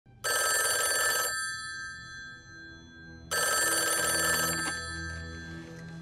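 Desk telephone bell ringing twice, each ring about a second long and fading out after it, the two some three seconds apart.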